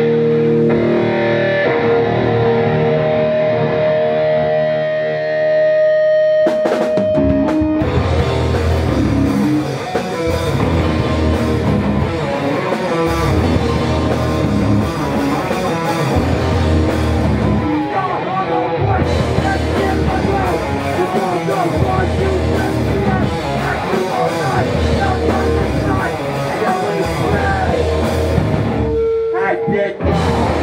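Hardcore punk band playing live. Distorted electric guitars ring out on held notes for about the first seven seconds, then the drums and the full band come in with a heavy, driving rhythm.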